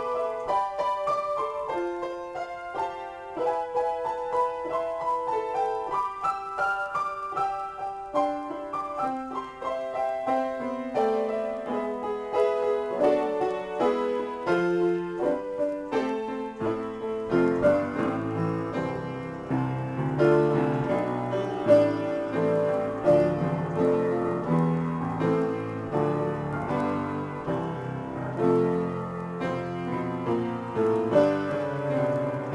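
Solo piano improvisation: a flowing line of single notes in the middle and upper register, thickening about halfway through as low bass notes and fuller chords come in and the playing grows somewhat louder.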